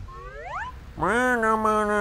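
A cartoon character's wordless closed-mouth hum, given as an answer to an accusing question. It is a short rising 'mm?' and then, after a pause, a longer steady 'mmm' held for about a second.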